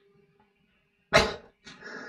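Two short vocal outbursts: a sudden sharp one about a second in, then a longer, breathier one near the end.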